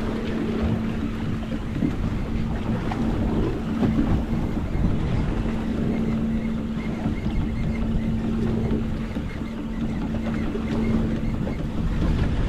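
Outboard motor idling with a steady hum, under wind noise on the microphone and the wash of the sea.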